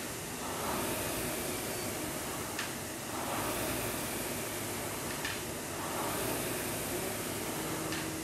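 Air-resistance rowing machine's fan flywheel spinning with a steady rush of air that swells with each pull, about every two and a half seconds. A light click comes once each stroke.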